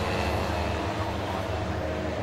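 Citroën 2CV race cars' small air-cooled flat-twin engines running steadily as the cars lap the circuit.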